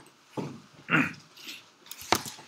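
Three short, low murmured vocal sounds, non-word grunts or hums from a person, the middle one the loudest.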